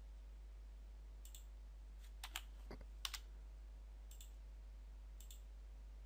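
A few scattered, faint clicks of a computer mouse and keyboard, about six in all, over a steady low hum.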